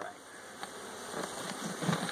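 Steady hum of honeybees flying around an opened hive box, with a short knock near the end as a wooden comb frame is pulled up out of the box.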